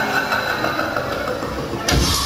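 A steady, busy hum of no clear source, then electronic dance music cuts in suddenly just before the end.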